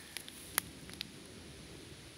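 Quiet background hiss with a few faint, short clicks and light rustles, about a second apart, typical of a handheld camera being handled close to leaf litter.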